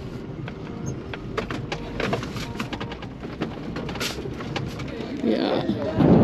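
Camper van rolling slowly across a gravel desert lot: many small crackles and pops of tyres on stones over the low rumble of the engine and cab, with a louder rushing noise near the end.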